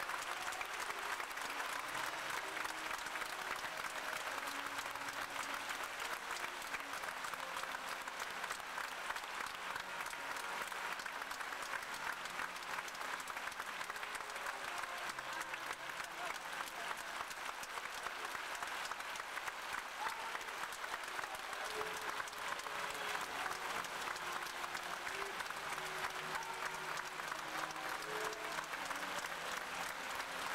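Large theatre audience applauding, a dense, steady ovation of many hands clapping together.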